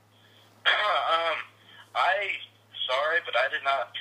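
A man speaking, in three short stretches starting under a second in, over a steady low electrical hum.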